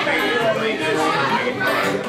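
Voices chattering over an acoustic string-band jam, with guitars being strummed.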